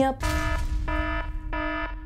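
Electronic alarm buzzer beeping three times at one steady pitch, each beep about half a second long.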